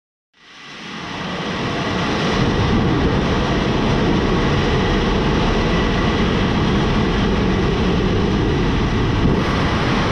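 Soyuz-2.1a rocket's first-stage engines firing at liftoff: a loud, steady rushing rumble that swells in over the first two seconds.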